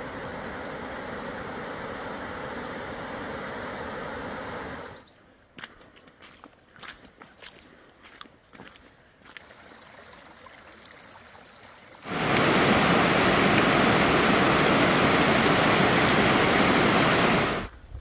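Steady rush of a snowmelt waterfall cascading down a cliff. After about five seconds it drops to the quieter trickle of shallow runoff flowing over rocks down the trail, with small scattered clicks. About twelve seconds in, a much louder steady rushing noise sets in and stops shortly before the end.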